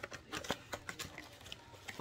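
Soft rustling and a few faint scattered clicks of a small cardboard box being opened by hand, its flaps and packaging handled; one sharper click about half a second in.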